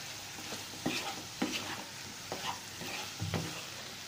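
A spatula stirs and scrapes diced potatoes and shallots in a nonstick frying pan over a steady frying sizzle. Irregular short scrapes and knocks against the pan punctuate it, the lowest knock coming a little over three seconds in.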